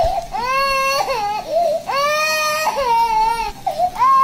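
A series of high, drawn-out crying wails, about five in a row, each held for around half a second to a second, some bending in pitch.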